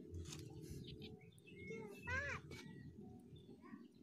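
Low rumbling background with, about halfway through, one short animal call that rises and falls in pitch.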